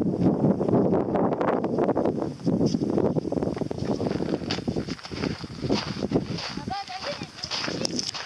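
Footsteps scrambling over granite rock and landing on sand, a run of short knocks and scuffs. A rumble of wind on the microphone fills the first few seconds, and a brief voice sounds near the end.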